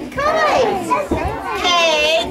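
Young children's voices with a woman's, calling out in a sing-song chant with a regular beat.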